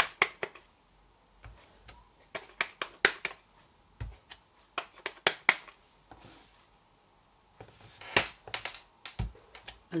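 Stamp block tapped against an ink pad and pressed onto cardstock on a work mat: sharp clicks and taps in small clusters, a few seconds apart.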